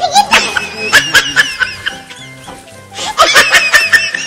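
Two bursts of laughter, one at the start and another about three seconds in, over background music with held notes.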